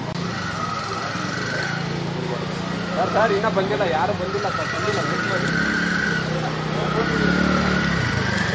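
People's voices over a steady low hum of a running engine, with a brief burst of talk about three seconds in.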